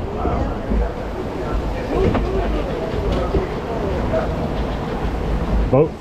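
Log flume boat moving along its water channel: a steady low rumble with rushing water, and faint voices in the background.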